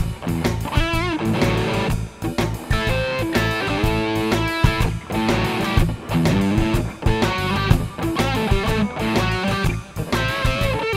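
Electric guitar playing a lean riff of short picked notes on the root, sixth and flat seventh, some held with vibrato, over a shuffle backing track with a steady bass line.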